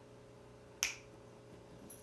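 A single sharp click about a second in, over a faint steady hum.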